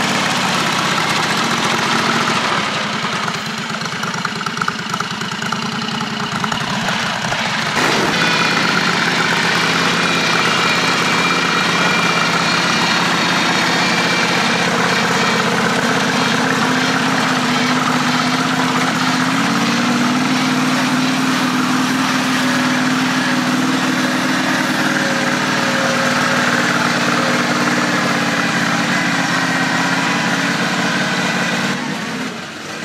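Predator 670 V-twin engine of a John Deere 214 mud mower running under way. The sound changes abruptly about eight seconds in, then stays steady, with a slight rise in pitch around twenty seconds in.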